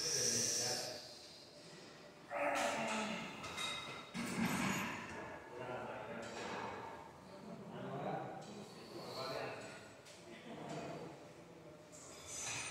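A man breathing hard and grunting with effort through a set of preacher curls on a weight machine, with a forceful exhale about every two seconds.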